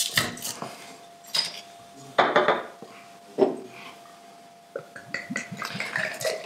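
A crown cap is pried off a glass beer bottle with a bottle opener, opening with a sharp click, followed by a few glass-and-metal clinks and knocks as the bottle and opener are handled. Near the end the stout starts pouring into a glass.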